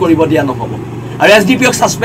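A man speaking into microphones, with a steady low background hum.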